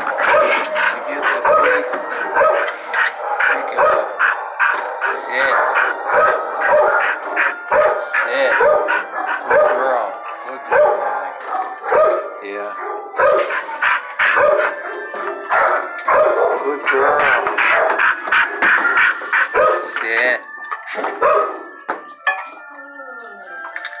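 Shelter dogs barking without a break, several barking over one another at about two barks a second.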